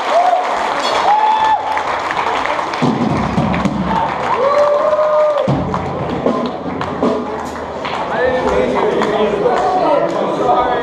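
Live hardcore band sound between songs in a reverberant room: a few long, held amplified notes over a loud mix of crowd voices and shouts, with scattered knocks and thumps.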